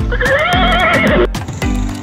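A horse whinnying once, a call of a little over a second with a wavering, quavering pitch. Background music with a steady beat comes back in after it.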